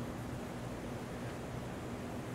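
Steady room tone in a classroom: an even hiss with a faint low hum and no distinct events.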